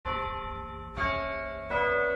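A bell chime: three bell notes struck one after another, each at a different pitch and each ringing on into the next.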